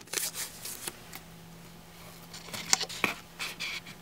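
Hands tearing and pressing strips of masking tape onto a plastic 2-liter soda bottle: quiet scattered crackles and taps, a few near the start and a cluster near the end.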